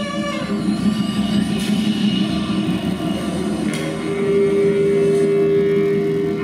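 Large ensemble of accordions, saxophones, brass, flute, vibraphone and drums playing a dense cluster of held notes, with a couple of sharp percussive strikes; a strong sustained note comes in about four seconds in.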